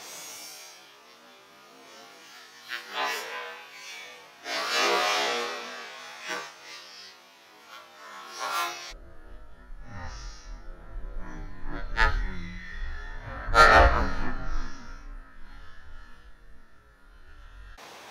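Music for about the first nine seconds, then a skateboard's wheels rumbling on concrete. About three seconds into the rumble comes a sharp snap, and shortly after a louder clatter of the board hitting the ground.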